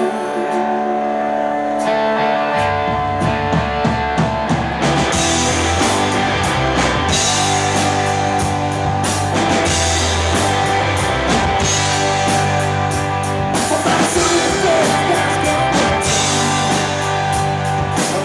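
A live rock band playing the opening of a song on electric guitars. A bass comes in about two and a half seconds in, and the drum kit joins a couple of seconds later. From there the full band plays on steadily.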